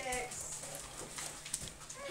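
A cat meowing briefly at the start, over a thin stream of faucet water running into a stainless-steel sink.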